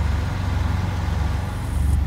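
Peterbilt semi truck's diesel engine idling, a steady low rumble heard inside the cab.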